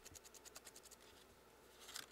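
Dry brushing: a paint brush's bristles scratching quickly back and forth over a primed foam claw, faint strokes about ten a second through the first second, then a short lull and one louder stroke near the end.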